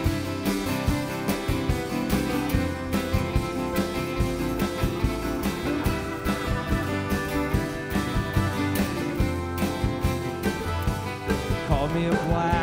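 Live acoustic band playing an instrumental passage: strummed acoustic guitar, picked mandolin and upright bass over a drum kit keeping a steady beat.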